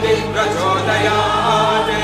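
A group of voices chanting a Sanskrit devotional mantra to Ganesha, with held, gliding sung notes over a steady low drone.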